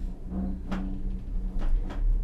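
Gondola cabin running along its haul cable in the wind: a steady low rumble and hum with a few sharp knocks and rattles of the cabin.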